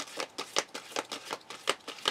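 A tarot deck being shuffled by hand: a quick, irregular run of soft card snaps, about five or six a second.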